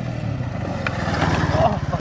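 Small 50cc scooter engine running as the scooter is ridden, a low pulsing hum that gets a little louder in the second half.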